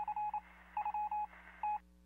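Telephone keypad tones: a code being keyed in after an automated phone prompt, as quick runs of short beeps with a gap about half a second in and a last single beep near the end, over a faint line hiss.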